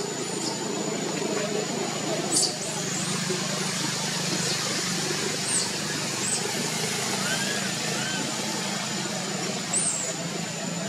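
Outdoor background of a steady engine-like hum with indistinct distant voices and a thin, steady high whine, broken by four short, very high-pitched chirps: about two seconds in, twice in the middle and near the end, with two softer arching calls shortly before the last.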